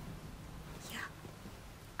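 A woman's soft, breathy "yeah" about a second in, over faint low room hum.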